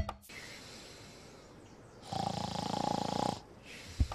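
A man snoring while asleep: a soft breath, then one long, loud snore from about halfway through lasting over a second, then a softer breath out.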